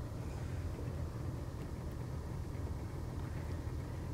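A boat's motor idling with a steady low rumble.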